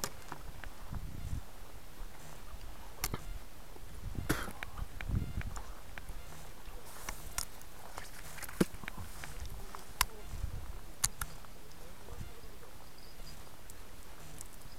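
Footsteps and camera handling knocks as someone walks along a dirt riverbank path. A few sharp, irregular clicks stand out, along with occasional low rumbles.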